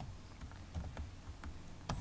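Computer keyboard typing: a few faint, scattered keystrokes, with a sharper one just before the end.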